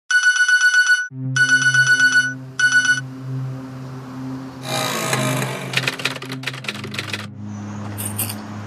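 An alarm ringing with rapid electronic pulses, about eight a second, in three bursts, the last one cut short, over a low steady music drone. Later comes a swish and then a quick run of sharp clicks.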